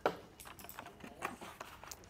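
Soft pastel sticks tipped out of their box, clattering lightly onto the table: one sharp click at the start, then scattered lighter ticks.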